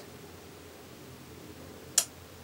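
Quiet room tone: a faint steady hiss with a low hum, ending with a single brief sharp click.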